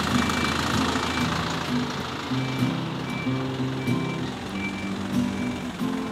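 Background music with held low notes that change pitch every second or so and a short high tone that repeats, over the low steady hum of a light truck's engine idling.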